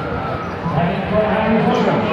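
Background voices of people passing by, over dull low thuds and rumble from a handheld phone being carried while walking.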